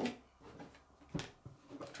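A quiet pause with one short, sharp click about a second in, followed by a few fainter small sounds.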